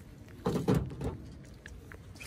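Rustling and movement noise from walking beside the car, with a couple of light clicks near the end.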